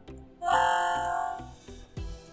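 Background music with a soft, regular beat. About half a second in, a louder plucked-string chord rings for about a second and fades.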